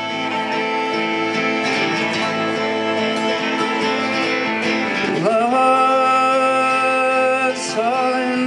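Harmonica solo in the instrumental break of a folk-country song, playing long held notes over instrumental accompaniment. A note bends sharply upward about five seconds in, and another near the end.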